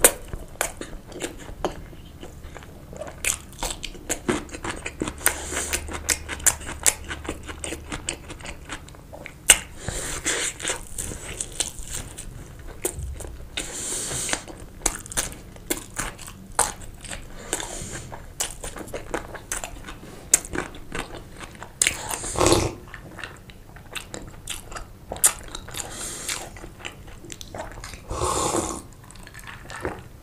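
Close-miked chewing of sausage, with wet mouth clicks and lip smacks. There are a few louder, longer sounds about two-thirds of the way through and again near the end.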